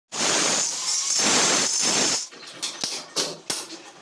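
Angle grinder with a cutting disc running against a plastered masonry pillar for about two seconds, a steady high-pitched grinding with a whine on top. Then hammer blows on a chisel chipping out the cut masonry: a handful of sharp, separate strikes.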